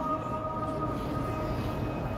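The echo of the call to prayer fading away in the pause between two phrases, over a steady low rumble of background noise.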